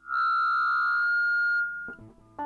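Stratocaster-style electric guitar played through effects: one high note struck sharply and held for about a second and a half before fading, with a fresh pick attack near the end.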